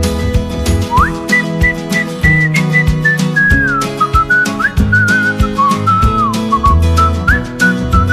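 Instrumental break of a pop song: a whistled melody with short upward slides into some notes, over a backing track with a steady beat and bass.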